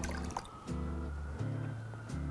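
Burdock tea poured from a plastic bottle into a small cup. The pouring tone rises steadily as the cup fills. Background music with a bass line plays alongside.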